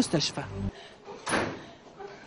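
A hospital corridor's swing door being pushed open, one short bang about a second and a half in that fades quickly.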